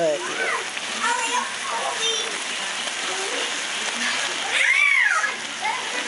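Beef and spinach stew simmering in a pan with a steady hiss, while a high child's voice calls out in the background, one rising-and-falling cry near the end.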